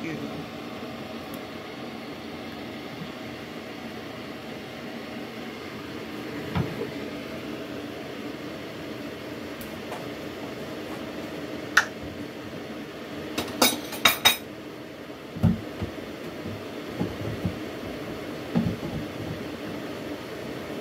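Kitchen clatter of dishes and utensils being handled at a sink: a quick run of sharp clinks about two-thirds of the way through, then a few duller knocks, over a steady hum.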